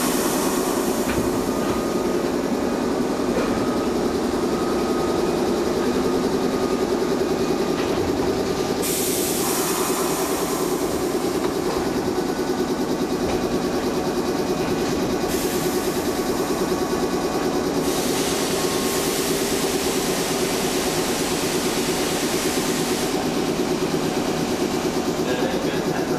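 JR 113 series electric train standing at a station platform, its under-floor equipment running with a steady mechanical hum, while a high hiss comes and goes several times.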